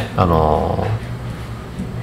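A man's voice holding a low, drawn-out hum or filler sound for under a second, falling slightly in pitch, followed by quiet studio room tone.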